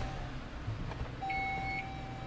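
Dashboard chime of a 2017 Chrysler Pacifica sounding just after the push-button start: from about a second in, a steady tone with a higher beep pulsing about once a second. Under it is a low steady hum from the 3.6L V6 running.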